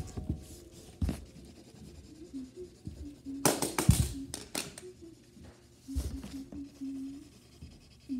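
Translucent plastic building tiles being set down and clacked against each other on a hardwood floor, with some scraping. There are scattered single clacks, and a quick run of clacks and scrapes about halfway through is the loudest part.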